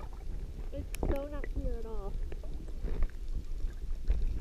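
Muffled low rumble and sloshing of water around a submerged camera. About a second in, a person's voice gives two short wavering calls, heard muffled.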